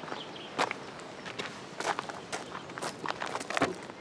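Footsteps crunching on a gravel driveway: a series of uneven steps, about two a second.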